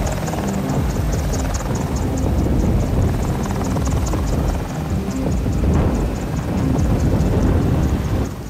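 Helicopter rotor and turbine running steadily at ground idle, the blades beating fast and evenly, about five beats a second.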